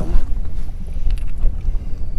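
Wind buffeting the microphone on an open boat: a steady, loud low rumble.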